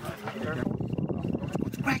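Quick, irregular low rattling and scraping as a rocket's rail guides are slid along the metal launch rail by hand.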